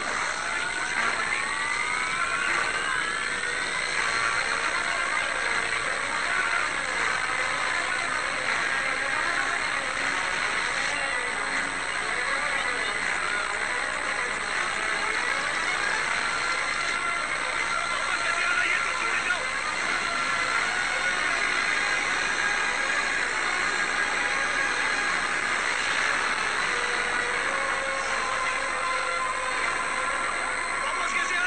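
Film sound effects of a sci-fi time machine running. In the first few seconds several whines rise in pitch together, then a steady, dense whirring wash holds without a break.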